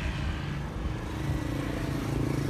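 A motor vehicle engine running steadily, a low even hum that grows a little firmer about a second in.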